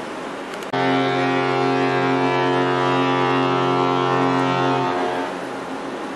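Carnival Pride cruise ship's fog horn sounding one deep, steady blast of about four seconds. It starts suddenly under a second in and dies away near the end. It is a fog signal, sounded in thick fog over the water.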